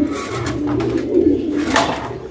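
Racing pigeons cooing in a loft, with a brief rustle near the end.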